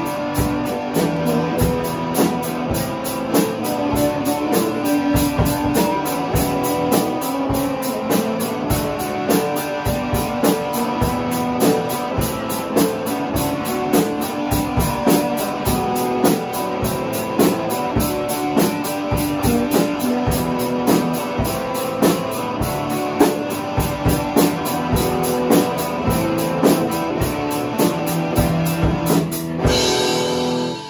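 A live rock band of young players: a drum kit beating a steady rhythm under electric guitars. The song stops right at the very end.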